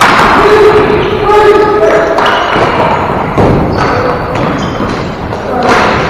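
Players shouting and calling out during a ball hockey game in a gym that echoes, with one long held shout near the start. Thuds of sticks and ball hitting the floor are mixed in.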